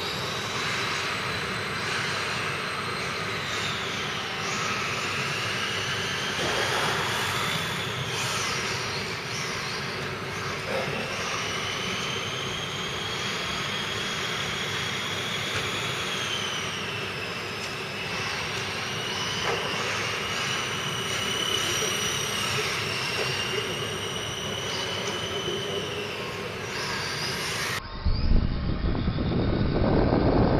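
High-pitched whine of several 1:10 electric RC car motors, the pitch gliding up and down as the cars accelerate and slow around the track. Near the end the sound changes abruptly to a louder rumbling noise picked up by a camera riding on one of the cars.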